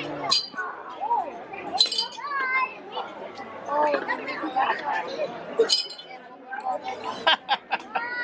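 Plastic ring-toss rings striking and clinking against rows of glass bottles: several sharp clinks, with a quick run of them near the end.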